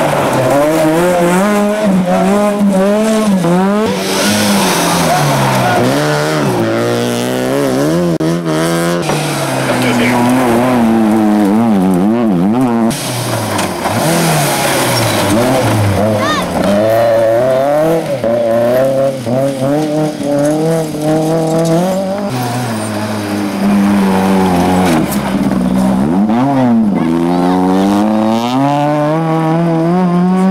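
Rally cars driven hard through gravel corners, engines revving high, the pitch climbing and dropping again and again with throttle and gear changes.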